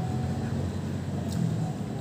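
A steady low rumble of background noise, with no distinct single event.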